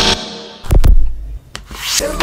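Intro transition sound effects: a fading whoosh, a deep bass hit about three-quarters of a second in, a sharp click, then a rising whoosh that leads into music.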